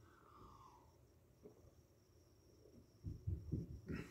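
A man taking a sip from a glass of beer. It is near silent at first, then about three seconds in come a few soft, low swallowing and breathing sounds.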